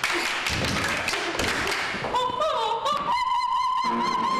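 A few thuds and clatter, then a woman sings loudly in a high, operatic stage voice, climbing to a long, very high held note.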